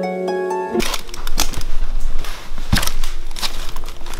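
A plucked, harp-like music cue cuts off abruptly about a second in. Then come footsteps crunching and crackling over a floor strewn with paper, cardboard and broken wooden strips, in irregular sharp crackles.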